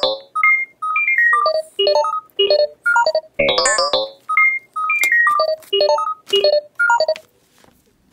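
Electronic ringtone-style melody of short, bright notes. The phrase repeats about every four seconds, each one opening with a quick sweeping chord. It stops about seven seconds in.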